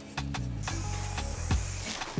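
Aerosol spray paint can hissing as paint is sprayed onto a wall, starting about half a second in and holding steady, over background music.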